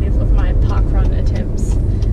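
Steady low rumble of a car driving, heard inside the cabin, with a woman's voice talking faintly in the first second.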